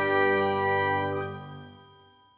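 Final sustained chord of a logo jingle: bell-like chime tones ringing out and fading away over the last second.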